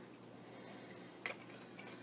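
Cooking oil being poured from a plastic jug into a stainless steel pan, almost silent over a faint steady hum, with one short light click a little past halfway as the jug is handled.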